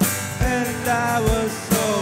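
A live worship band playing: voices singing a slow melody over acoustic guitar, bass guitar and a drum kit, with kick-drum beats at regular intervals.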